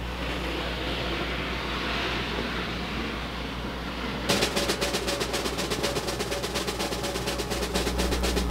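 A soft hiss swells for about four seconds, then a snare drum roll starts, a fast even run of strokes growing louder as a suspense build-up.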